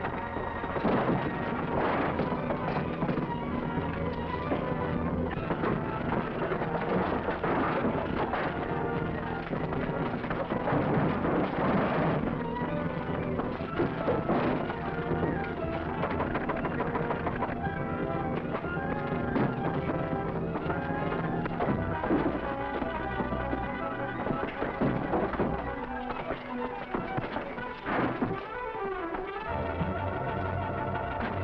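Dramatic orchestral film score playing throughout, over the thumps and crashes of two men fighting in a dark room.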